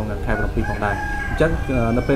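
A rooster crowing: one drawn-out call lasting under a second, about midway through.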